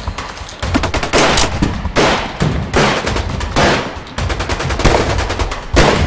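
Machine-gun fire sound effect in repeated rapid bursts, standing in for the shots of a pretend gun that is really a wooden stick.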